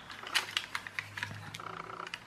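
Light, irregular clicks and taps from handling a small plastic toy car chassis and a pen-style screwdriver; near the end the screwdriver tip is set onto one of the chassis screws.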